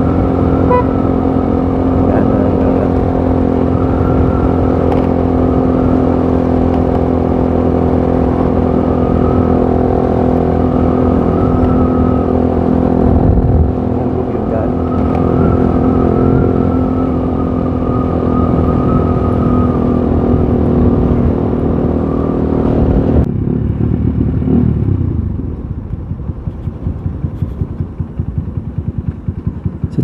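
Motorcycle engine running steadily at cruising speed, with heavy wind rumble on the microphone. About three-quarters of the way through the engine sound drops away as the rider eases off and slows down.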